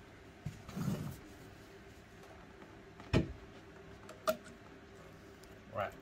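Metal parts of a three-phase motor being handled as its stator is worked out of the magnet-lined housing: a dull bump about a second in, a sharp knock about three seconds in, and a shorter metallic click with a brief ring just after four seconds.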